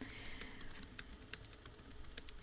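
Computer keyboard typing: light, irregular key clicks, several a second, faint.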